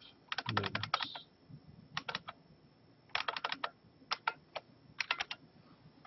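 Typing on a computer keyboard: five short bursts of quick keystrokes with pauses between, as a number in a document is deleted and retyped.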